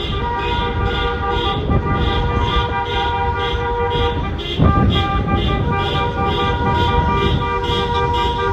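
Several car horns held down at once, giving overlapping steady tones. A new, higher horn joins about four and a half seconds in. Wind rumbles on the microphone from the moving vehicle.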